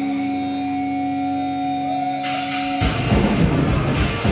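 Death metal band playing live: a held electric guitar tone rings steadily, cymbals come in a little after two seconds, and the full band with drums and distorted guitars starts up just before three seconds in.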